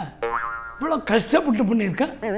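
A brief steady, buzzy tone near the start, then a man talking.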